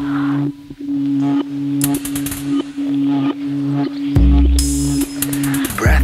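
Electronic music: a steady low held note over a pulsing lower note, with a deep bass note coming in about four seconds in.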